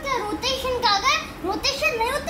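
Only speech: a young boy talking in a high child's voice.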